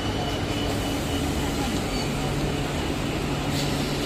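Indian Railways electric multiple unit (EMU) suburban local train moving along the platform: a steady rumble of wheels on rail with a low, even hum that grows clearer about a second in.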